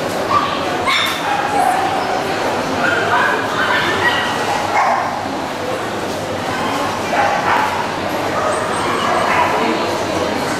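Dogs yipping and barking in short calls, several times, over a steady murmur of voices in a large hall.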